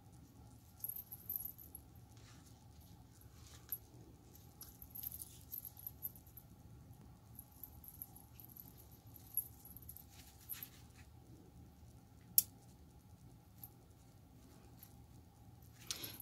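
Faint handling sounds of craft supplies on a tabletop: a small plastic glue bottle and lace being picked up and worked, with light scattered taps and one sharp click about twelve seconds in.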